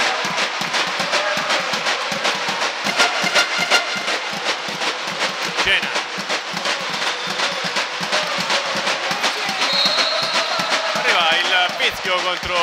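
Drumming and music in a basketball gym during play, with the voices of players and spectators mixed in. A brief high tone sounds a little before ten seconds.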